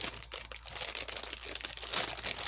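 Clear plastic wrapping crinkling and crackling as hands handle it and open it, in many small irregular crackles.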